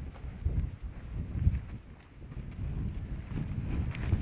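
Wind buffeting the microphone in a low, uneven rumble, with a few soft footfalls on grass and heather.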